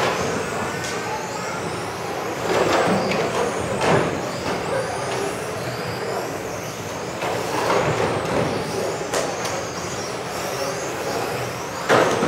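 Several electric 1:10 RC street-racing cars lapping a hall track together, their motors whining up and down in pitch as they accelerate and brake, over a steady wash of tyre noise. A few sharp knocks come through, a couple about a third of the way in and one near the end.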